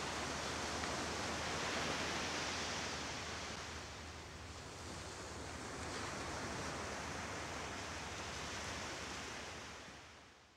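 Waves washing onto a sandy beach, a steady rushing that swells and eases, fading out at the end.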